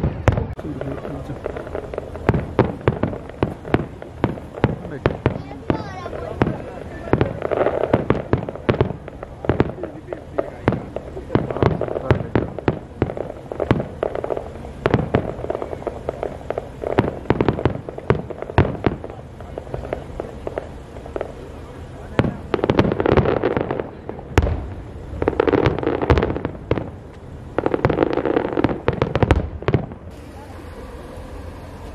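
Large aerial fireworks display: shells bursting in a rapid, irregular run of bangs, several a second, heard from a distance. Near the end the bursts thicken into three dense waves of continuous banging.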